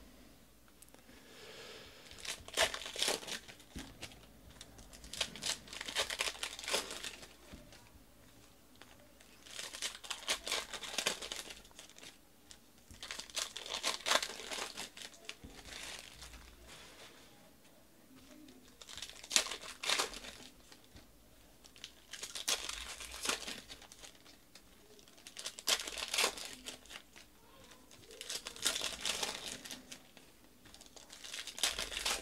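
Foil trading-card pack wrappers crinkling and tearing open as the packs are unwrapped, in about eight separate bursts a few seconds apart.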